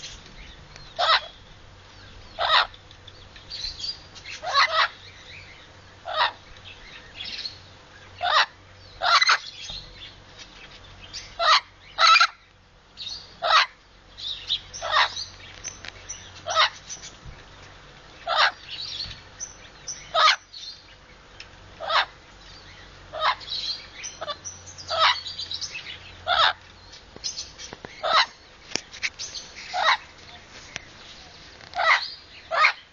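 Amazon parrot calling in a long series of short, loud squawks, one every second or two with irregular gaps.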